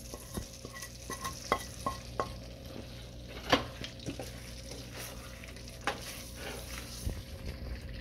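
Chicken and spices frying with a steady sizzle in a stainless-steel pan while a wooden spoon stirs them, with scattered taps and knocks against the pan; the loudest knock comes about three and a half seconds in.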